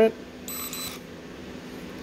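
F-B32 fingerprint lock's sensor gives one short, high beep about half a second in as it reads a finger pressed on it, accepting an enrolled print.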